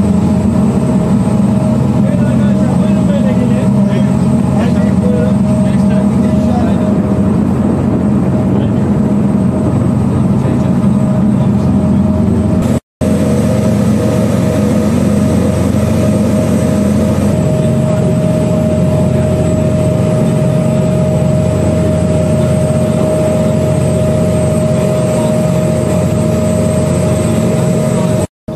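Steady low rumble of a ship under way, with a constant hum above it; the sound cuts out for an instant about halfway through.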